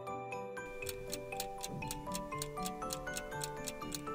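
A clock-like ticking sound effect, quick and even, starting just under a second in, over light background music: the countdown for thinking time on a quiz question.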